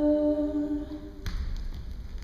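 A woman's voice holds one long, steady sung note, unaccompanied, which ends a little over a second in, followed by a soft thump.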